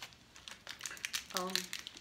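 Small clear plastic candy packet crinkling in quick crackles as it is handled in the fingers.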